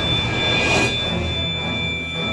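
A high, steady metallic ring from clashed steel sword blades, holding at two pitches, over a low droning music score.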